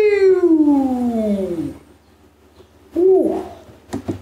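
A man's drawn-out vocal exclamation, like a long "ooooh", sliding steadily down in pitch and fading out before two seconds in, followed about three seconds in by a brief rising-and-falling vocal sound.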